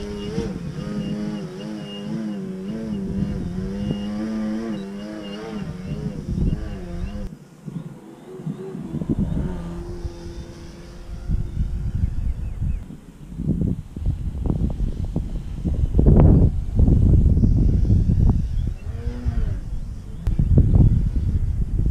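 Motor and propeller of a 60-inch Pilot RC Laser aerobatic model plane in flight, a pitched drone that rises and falls as it manoeuvres. In the second half, gusts of wind rumble on the microphone and become the loudest sound, with the plane's note sweeping up and back down as it makes a pass near the end.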